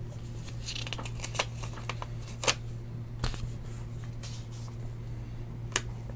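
Trading cards and their packaging being handled: a string of light clicks and rustles, the sharpest about two and a half seconds in, over a steady low hum.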